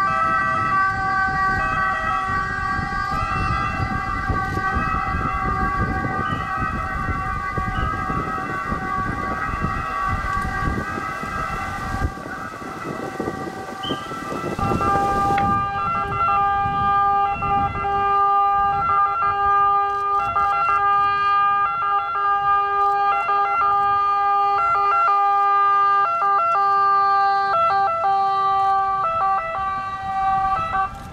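Ambulance sirens sounding continuously, more than one at once, their two-tone high-low notes stepping back and forth. A low rumble runs beneath them in the first half and stops about halfway, leaving the siren tones clearer.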